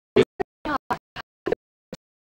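A voice heard only in short, choppy fragments, about seven in two seconds, each cut off abruptly into dead silence.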